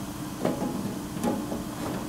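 Centrifugal fan running with a steady hum and rush of air, and a few light metal knocks as a rectangular sheet-metal duct section is fitted onto the fan outlet.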